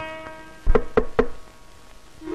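Film background music: a plucked string note dies away, then three quick drum strokes come close together about a second in, the first with a deep low thump.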